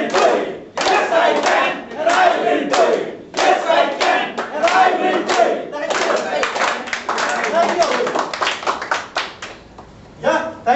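A group of people shouting a chant in unison several times, then breaking into clapping and cheering for a few seconds.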